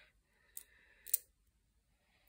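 Small magnetic balls clicking together as a chain of them is snapped onto the construction: a faint click about half a second in, then a sharper one just after a second.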